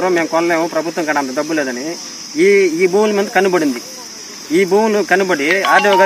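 A steady, high-pitched insect drone runs unbroken under a man's talk in Telugu. The talk breaks off briefly about two seconds in and again around four seconds.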